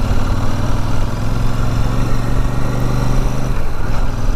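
Royal Enfield Super Meteor 650's 648 cc parallel-twin engine running steadily under way. The note eases off about three and a half seconds in.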